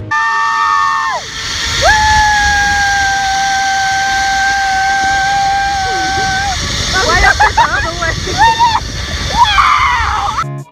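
A woman screaming on a zip line ride: two long, held screams, the second lasting several seconds, then shorter wavering cries near the end. Under them runs a steady rush of wind and ride noise.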